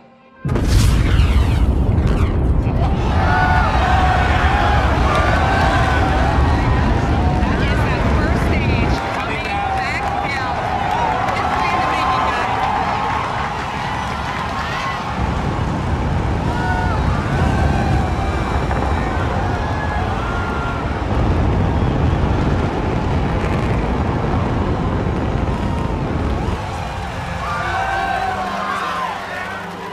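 A sudden loud boom from the returning Falcon 9 first stage, heard on the landing feed, followed by a deep rumble lasting several seconds. It sounded like an explosion. From about three seconds in, a crowd cheers and screams over it.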